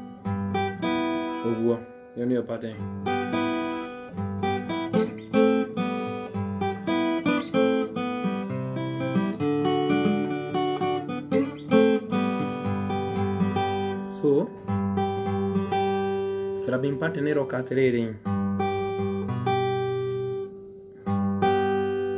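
Acoustic guitar picked in a mugithi line: a quick run of single notes over a bass part, with a few notes gliding in pitch and two brief pauses.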